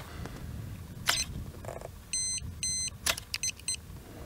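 Sharp clicks about a second in and again near three seconds, from hands working a 4x5 large format field camera. Two electronic beeps of one steady pitch come between the clicks, and a quick run of four or five short beeps follows the second click.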